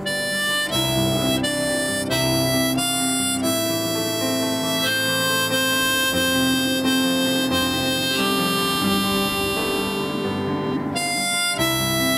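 Harmonica playing an instrumental break in a song, a melody of chords that step from note to note, some short and some held for a few seconds.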